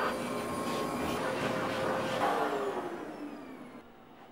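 Red canister vacuum cleaner running on carpet, then switched off about two seconds in: its motor whine falls in pitch and fades as it spins down.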